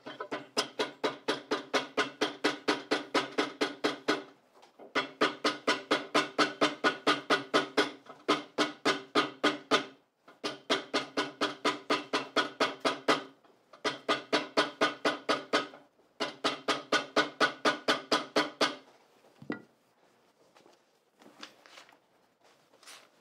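Shoe hammer tapping rapidly along a glued leather seam laid over a hard form, about four blows a second, each with a short ringing note. The blows come in five runs with brief pauses, setting the reinforcement strip onto the seam. A single duller thud follows near the end.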